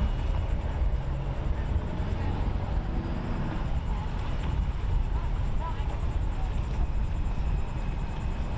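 Steady low rumble of wind on the microphone over faint outdoor background noise, with no distinct event standing out.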